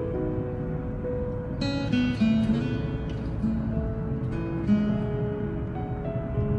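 Background music carried by acoustic guitar, plucked notes playing a gentle melody.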